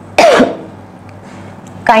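A woman's single loud cough, about a quarter second in, with her hand over her mouth.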